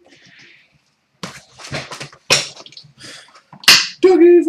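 Cardboard trading-card hobby box and packs being handled and opened by hand: irregular rustling and scraping begins about a second in, with two sharper, louder rips, one near the middle and one just before the end.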